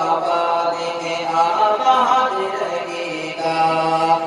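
Male voice singing an Urdu devotional tarana in long, drawn-out notes that bend in pitch, over a steady low hum that drops out near the end.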